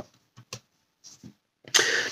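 A pause in a man's talk: near silence with a few faint short clicks, then his speech starts again near the end.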